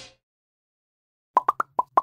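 Silence for over a second, then five quick, short pitched pops in a row: an editing sound effect of cartoon-like plops for an animated heart transition.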